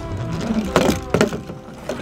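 Plastic toy monster truck sliding down a plastic spiral playground slide, with a few sharp knocks close together about a second in as it bumps along the slide walls.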